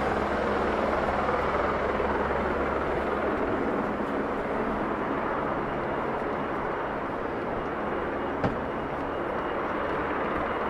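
Steady city-street background noise: a low, even hum of distant traffic, with one sharp tap about eight and a half seconds in.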